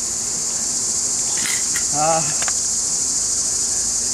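Steady, high-pitched drone of a summer insect chorus, with a couple of brief clicks about a second and a half in.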